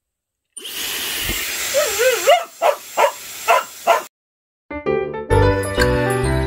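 A hair dryer switches on and blows steadily while a border collie gives a wavering, rising-and-falling whine and then four sharp barks at it, protesting at the dryer it dislikes; the dryer and barking stop together. Bright outro music with jingling bells starts near the end.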